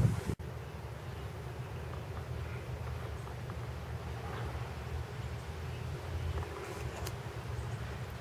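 Wind buffeting the camera's microphone, a steady low rumble.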